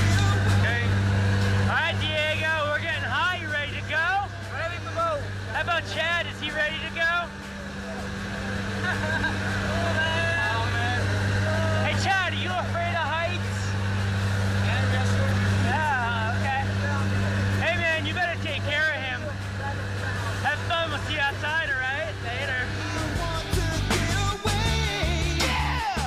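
Steady low drone of a skydiving jump plane's engines and propellers heard inside the cabin, with people's voices talking and calling over it.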